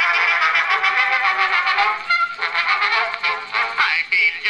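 An Edison two-minute wax cylinder playing on an early electric cylinder phonograph through its brass horn: the orchestral introduction to the song, with a thin, tinny tone and no bass.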